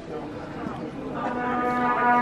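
Orchestral instruments in a reverberant concert hall sounding long held notes; a new, louder held chord comes in a little over a second in.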